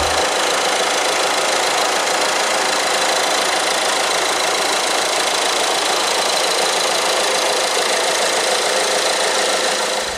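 Peugeot Partner van's engine idling, heard close up in the open engine bay: a steady, dense clatter with a faint high whine over it.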